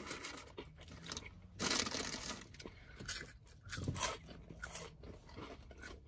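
A paper fry bag rustling and crinkling as fries are pulled out, and crispy seasoned fries being bitten and chewed, in short irregular bursts.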